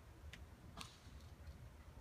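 Near silence, with two faint clicks from thin 26-gauge floral wire being handled and wound around a rolled faux leather tassel.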